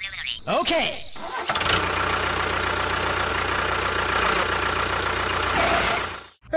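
An engine starts about a second and a half in and runs steadily, with a low hum under a dense, even noise, until it cuts off at the end. Before it comes a short sound that glides up and down in pitch.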